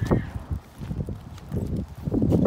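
Footsteps on pavement, a few irregular steps, with low handling rumble from a phone carried while walking.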